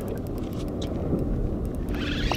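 Steady low rumble of a boat's idling engine and wind, with faint light ticking from a spinning reel being cranked against a hooked fish.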